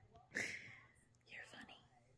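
A person whispering faintly: two short breathy bursts about a second apart, the first the louder.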